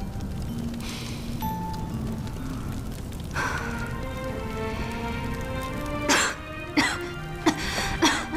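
Soft background music of held notes, growing fuller a little over three seconds in. Near the end a woman coughs three times, in short harsh bursts about two-thirds of a second apart.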